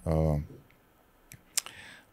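A man's voice trails off on a drawn-out word, then a short pause holds two small, sharp clicks, the second louder, just before he speaks again.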